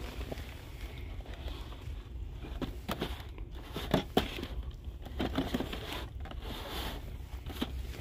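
Boxed die-cast models being handled on a shelf: light clicks and crinkles of plastic-windowed cardboard packaging, with a couple of sharper clicks about three to four seconds in, over a steady low hum.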